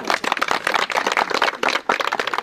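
A small crowd applauding, many hands clapping at once.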